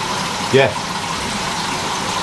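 Steady rushing, bubbling noise of aerated aquarium tanks, with air bubbling up through the water in many tanks at once.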